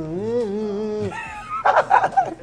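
A man singing one long, wobbling note that sounds like a howl, a mock show of his singing, which he calls terrible. It breaks off about a second in, and bursts of laughter follow near the end.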